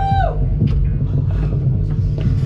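Electric bass and electric guitar through amplifiers, sounding low sustained notes as a live band starts a song, with a short whine that rises and falls in pitch right at the start.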